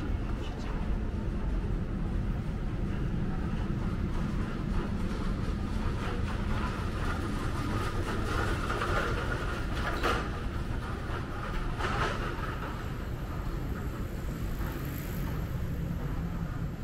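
Steady low rumble of city street background noise with faint passing voices, and a couple of sharp clicks about two-thirds of the way through.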